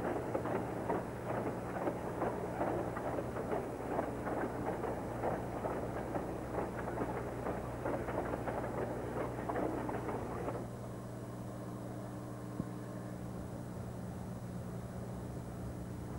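Freight train rolling past, a dense rumbling clatter of moving cars that drops suddenly about ten seconds in to a quieter, steady low hum.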